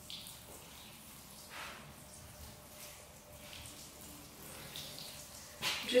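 Water showering from a plastic watering can's sprinkler spout onto loose soil in a raised garden bed, a faint steady patter.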